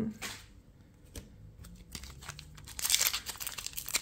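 Foil Pokémon TCG booster pack being handled and torn open by hand: a few small clicks at first, then a burst of crinkling and tearing of the wrapper in the last second or so.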